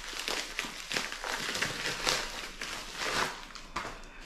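White plastic mailing bag crinkling and rustling in the hands as a small cardboard box is worked out of it: a steady run of irregular crackles.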